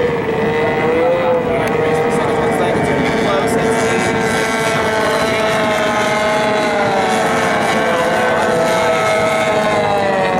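Outboard motors of several AX Runabout race boats running flat out, a steady high engine whine. Their pitch slowly rises and falls as the boats pass and turn.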